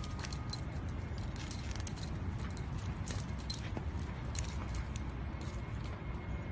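Metal leash snap hook and harness hardware jingling in quick, irregular clinks as a corgi puppy tugs and chews on its leash, over a low steady rumble.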